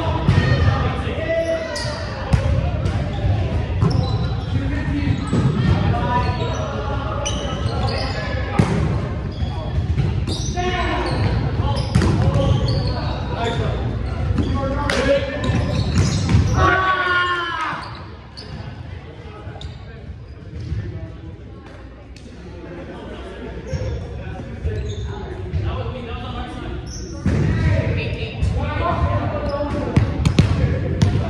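Indoor volleyball play in a large, echoing gym: sharp smacks of the ball being hit and bouncing, amid players' voices calling out and talking. It goes quieter after about eighteen seconds.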